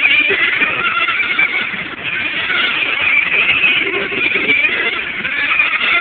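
Several radio-controlled race cars running laps together, their motors making a steady, high, wavering whine.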